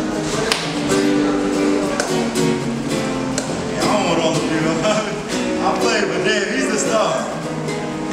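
Nylon-string acoustic guitar played with plucked notes in a flowing run, with a man's voice talking over it from about halfway through.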